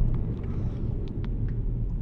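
Steady low rumble of road and engine noise from a car driving along a city street, heard from inside the cabin.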